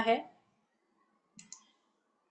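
A spoken word ends, then a pause with a couple of short, faint clicks about a second and a half in.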